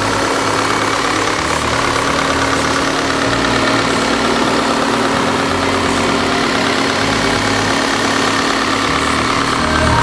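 Volkswagen Tiguan's TSI turbocharged four-cylinder petrol engine idling steadily, heard close up under the open hood.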